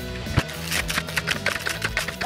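Background music over a skier's tumbling crash in snow: a run of irregular knocks and thuds as skis and body hit the slope.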